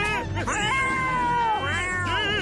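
A cartoon cat's long yowl, held for over a second and dropping in pitch at its end, over background music.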